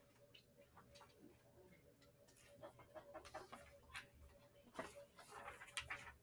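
Near silence: faint classroom room tone with a steady low hum and scattered small clicks and rustles.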